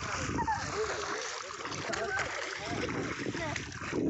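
Feet splashing and sloshing through shallow river water as children wade.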